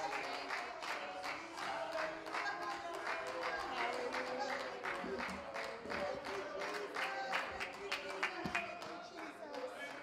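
A lively congregational worship song: a live church band with drums and keyboard plays while people sing and clap steadily on the beat.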